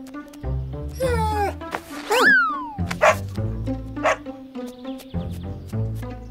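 An animated bull terrier barking and yipping a few times over steady children's background music.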